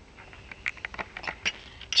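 Irregular light rustles and clicks, about a dozen, growing denser after about half a second, as toy horses are handled in grass.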